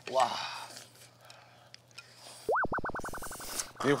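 A cartoon 'boing' spring sound effect: a tone that springs up and then wobbles rapidly up and down for about a second, starting a little past the halfway point.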